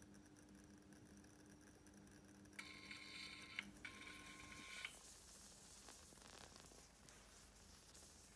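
Near silence: faint room tone with a low hum, and two faint beep-like tones of about a second each, about two and a half and four seconds in.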